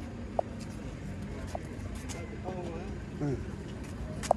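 A steady low outdoor rumble with people talking in the background, and two brief high blips in the first couple of seconds.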